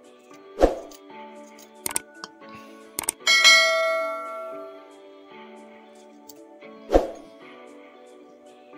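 Background music, with a click and then a bright bell ding from a subscribe-and-notification-bell animation about three seconds in, ringing out for a second or so. Two dull thumps, one near the start and one near the end.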